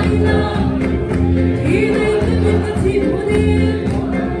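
A congregation singing a gospel hymn together in chorus, loud and continuous, over a steady pulsing beat.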